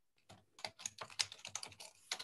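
Computer keyboard typing: a quick, irregular run of key clicks starting about a third of a second in.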